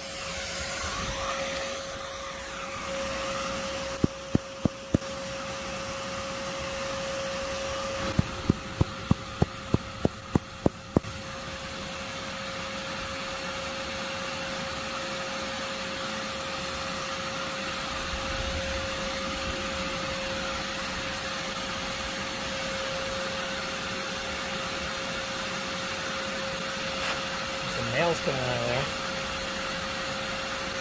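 Shop vacuum running steadily with a constant whine, its hose sucking yellow jackets from the entrance of a ground nest. Sharp clicks come four times a few seconds in and again in a quick run of about nine near the ten-second mark.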